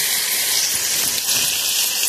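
Ground wet spice paste going into hot oil in a kadhai, sizzling steadily.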